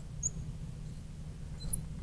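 Marker tip squeaking on a glass lightboard while writing: a brief faint squeak early on and a louder rising-and-falling squeak about three quarters of the way through.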